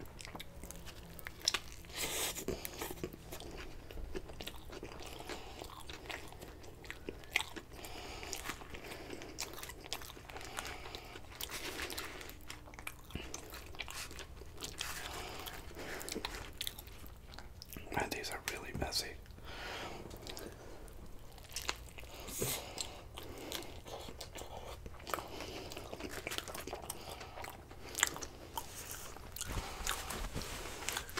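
Close-miked biting and chewing of a nori-wrapped sushi burrito: wet mouth sounds with scattered sharp clicks and crunches throughout.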